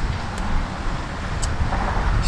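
Wind buffeting an outdoor microphone: a loud, irregular low rumble.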